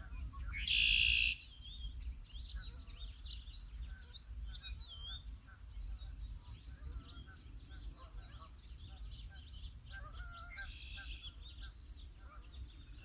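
Wild birds chirping and calling all through, with a loud buzzy call about a second in and a similar one near the end, over a steady low rumble.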